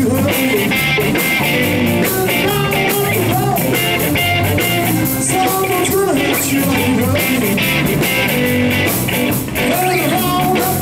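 A live rock band playing: electric bass, electric guitar and drum kit, loud and steady.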